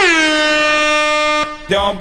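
An air horn sound effect blasts once for about a second and a half. Its pitch sags briefly at the start, then holds steady, and it cuts off suddenly.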